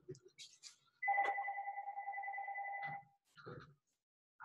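A telephone ringing: one electronic ring of about two seconds, a warbling two-tone trill that starts about a second in.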